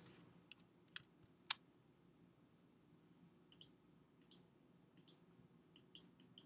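Faint, scattered computer clicks, about seven in all, the sharpest about one and a half seconds in, over near-silent room tone.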